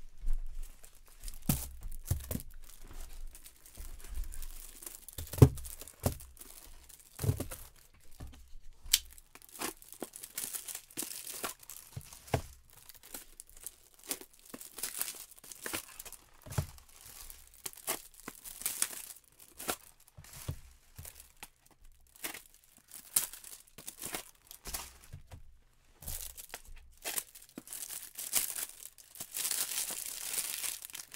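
Packaging being handled: crinkling and tearing of wrap, among scattered light knocks and taps, with the sharpest knock about five seconds in.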